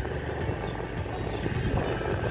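Low, steady rumble of a moving vehicle, heard from on board.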